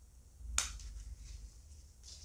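Diagonal cutting pliers snipping through a thin covered craft wire: one sharp click about half a second in.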